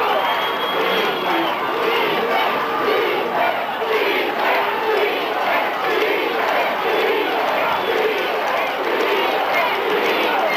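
High school football stadium crowd shouting and cheering, many voices overlapping in a continuous din.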